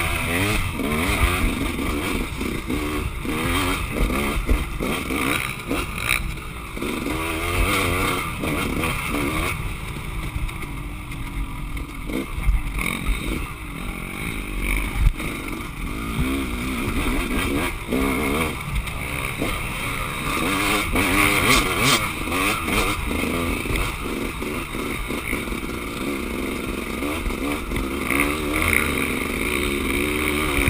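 KTM 200 two-stroke dirt bike engine being ridden hard on a rough trail, close to a handlebar-mounted camera. Its pitch rises and falls again and again as the throttle is worked, with knocks and rattles from the bumps.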